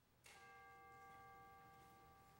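A bell or chime struck once, faintly, about a quarter second in. Its several steady tones ring on and slowly fade.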